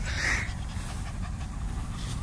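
A young Maltese dog panting softly close by, over a low steady rumble.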